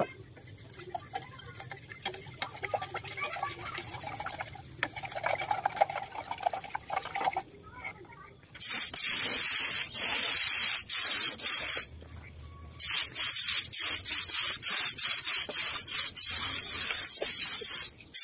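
Compressed-air spray gun spraying finish in a loud, steady hiss that starts about halfway through, cuts out briefly for under a second, then carries on. Before it, quieter handling clicks and knocks.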